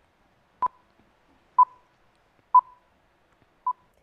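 Four short beeps of one steady mid-pitched test tone, about a second apart, the last one shorter and quieter: broadcast countdown pips played with colour bars before a programme starts.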